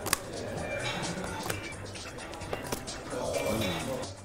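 Background music, with a few sharp clicks of a stack of cardboard beer mats being flicked off a table edge and caught. A short low voice comes in near the end.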